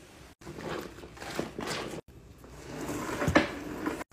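Spin mop in use: the microfiber mop head swishing and scrubbing over a wet floor, then spinning in its wringer bucket. It comes in two short takes that each swell and cut off abruptly. The second builds to a sharp knock near the end.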